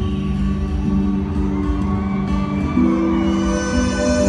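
Live acoustic guitar music amplified through a stadium PA, with sustained held notes and a chord change about three seconds in.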